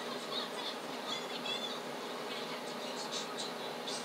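Steady background hiss with faint, soft scratches of an eyeshadow brush being worked on the eyelid, and a few brief faint high squeaks about a second in.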